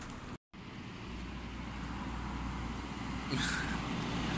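Road traffic noise: a steady low rumble of passing vehicles, after a brief dropout in the sound just after the start. A short, brighter sound comes near the end.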